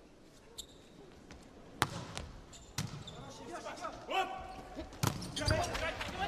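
A volleyball bounced on the hard court floor by the server before the serve, a few sharp slaps spaced a second or more apart, with a final hit about five seconds in as the ball is served. Faint voices sound behind it.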